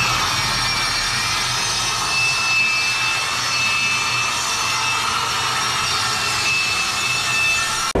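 Vertical panel saw running and ripping a sheet of OSB: a steady motor and blade whine with cutting noise, and a thin high tone that comes and goes.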